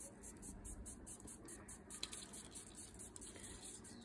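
Faint, soft rustling of a paper quilling strip being wound tightly onto a slotted quilling tool, barely above room tone.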